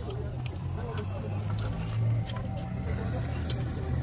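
Steady low rumble of an engine running in the background, with two sharp clicks, about half a second in and again near the end.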